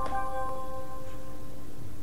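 Guitar notes plucked at the start, ringing out and fading over about a second and a half.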